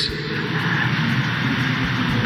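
A pause in speech filled with steady background noise, an even hiss with no sudden events.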